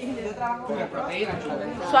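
People talking: a group conversation with overlapping voices, speech only.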